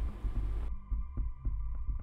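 Background music bed with a low pulsing bass and quick light ticks about five times a second over a few steady tones. A brighter hiss of noise under it cuts off abruptly under a second in, leaving only the bass-heavy music.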